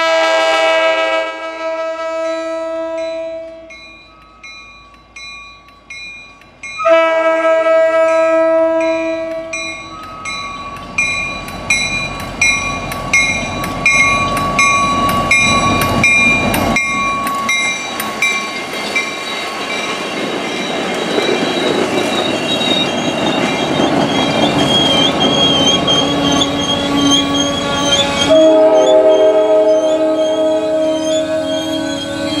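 MBTA commuter train led by an F40PH diesel locomotive, sounding its multi-note air horn: one long blast, then a second long blast about seven seconds in. The locomotive and coaches then pass close by with a loud rumble and clickety-clack of wheels on rail joints, and a horn sounds again near the end. A bell dings steadily under it all.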